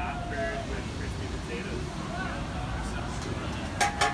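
Background chatter of people talking over a steady low rumble of city traffic, with one sharp clack just before the end.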